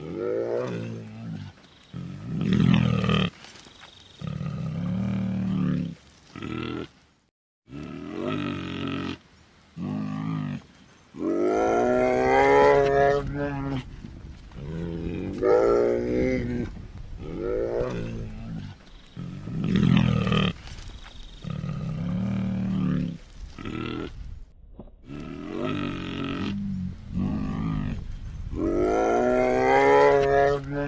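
Bear calls: a series of grunts and roars, some low and some higher-pitched, each up to a few seconds long with short pauses between. The longest and loudest call comes near the middle, and a low steady hum runs under the second half.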